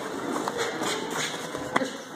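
Shuffling and scuffing of two boxers grappling in a clinch on the ring canvas, with one sharp knock near the end.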